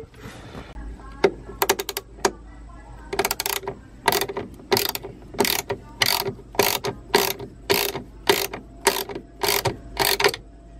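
Hand socket ratchet clicking as it is worked back and forth to tighten the bolt on a grounding post holding a ground wire terminal. A few stray clicks at first, then an even rhythm of about two ratcheting strokes a second from about three seconds in.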